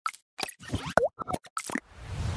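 Motion-graphics logo intro sound effects: a rapid string of short synthetic pops and plops, the loudest about a second in, with a quick sliding pitch.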